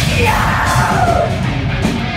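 A live metal band playing: drums, electric guitar and bass guitar, with a woman's yelled vocals over them. The cymbals drop out briefly near the end.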